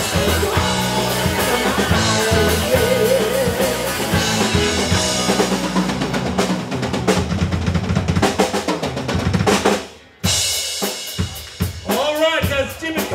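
Live band with electric guitars, bass, keyboards and a drum kit playing an instrumental passage, the drums to the fore. About halfway through the drummer plays a fast fill, the band cuts out for a moment near the end, and a cymbal crash rings out before the singing resumes.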